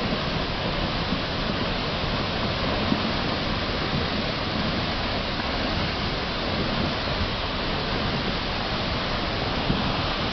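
Steady rushing of a muddy flash-flood torrent pouring down a steep hillside, a constant dense roar of water with a couple of faint brief knocks.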